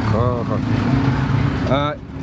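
A steady low engine hum, with two short voiced sounds from people over it, the second a rising 'aah' near the end.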